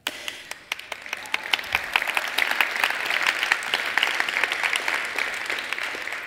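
Audience applause in a hall: scattered claps at first, filling out into fuller applause after a couple of seconds.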